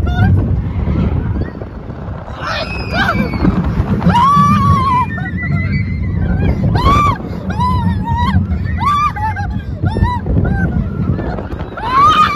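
Riders screaming on an amusement park ride: repeated high shrieks that rise and fall, some held for about a second, over the low rumble and wind noise of the moving ride.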